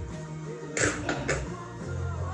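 Background music with a steady bass line, with a few brief hissy sounds about a second in.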